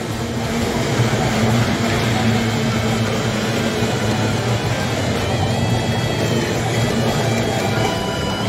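Racing boats' two-stroke outboard engines running, a steady drone as the boats cross the finish line. Held musical tones join in about five seconds in.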